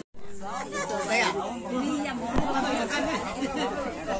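Speech only: several people talking at once in overlapping chatter, with one sharp knock a little past halfway.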